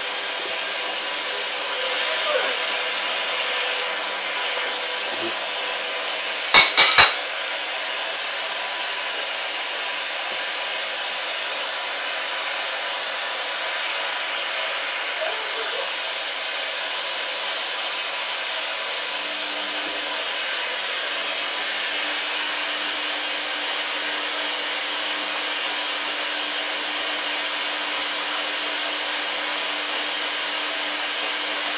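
Hoover DYN 8144 D front-loading washing machine running its cotton 60 °C wash with the drum turning the laundry: a steady hiss, with three quick sharp clicks about seven seconds in. A faint low hum joins about two-thirds of the way through.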